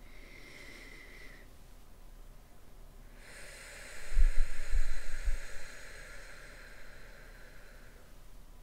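A person breathing deeply through the nose close to the microphone: a steady breathy hiss sets in a little after three seconds, with a few low puffs of breath on the microphone about four to five seconds in.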